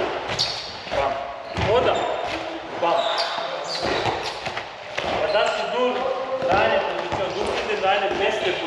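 A handball bouncing and thudding several times on a wooden sports-hall floor, echoing in the large hall, with voices talking over it.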